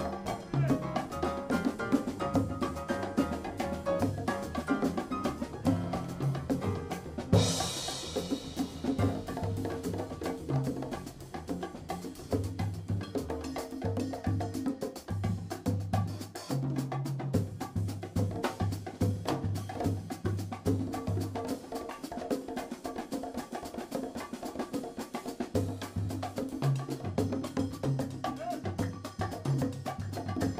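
A small live band playing, led by hand drums and percussion over a bass line, with a bright crash about seven seconds in.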